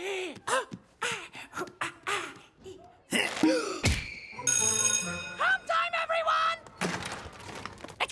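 Cartoon sound track: wordless voice sounds over music, a heavy thud about four seconds in, then a brief bright ringing.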